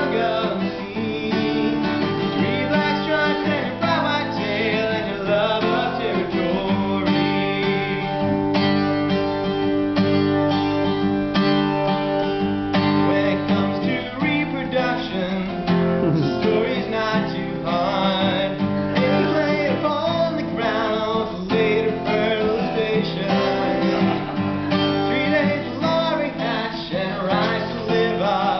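Steel-string acoustic guitar strummed in a steady rhythm, with a man singing along in places.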